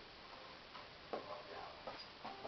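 Two sharp clicks of a dog-training clicker, about a second in and again near the end, marking the dog's moves in a shaping exercise with a box.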